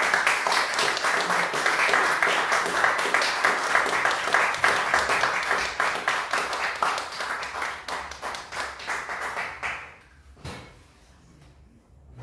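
Audience applauding, a dense patter of many hands clapping that tapers off and dies away about ten seconds in.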